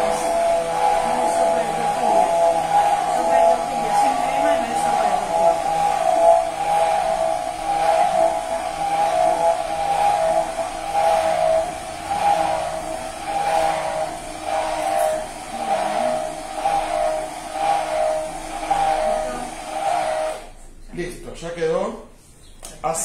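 Hand-held immersion blender running steadily in a tall cup, blending soaked cashews into a thin vegan sour cream. Its motor hum wavers slightly as the stick moves, then stops shortly before the end.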